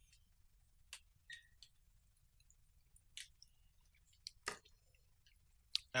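A quiet room with a few faint, scattered clicks, about half a dozen, the clearest about four and a half seconds in.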